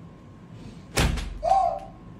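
A stick strikes something hard with one loud whack about halfway through. Right after it comes a short, high yelp.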